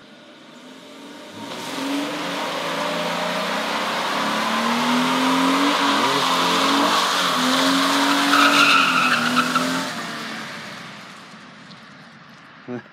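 A 2014 GMC Sierra 1500 pickup doing a burnout: its 4.3-litre V6 is held at high revs while the tyres spin and squeal on the road. The sound builds over the first two seconds, holds loud, and fades away after about ten seconds.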